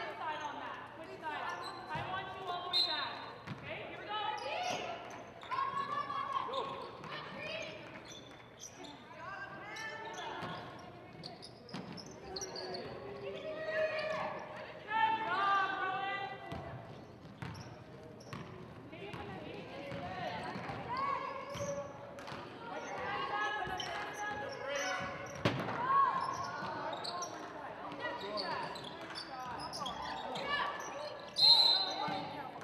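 A basketball being dribbled and bounced on a hardwood gym floor during play, with players' and coaches' voices calling out throughout.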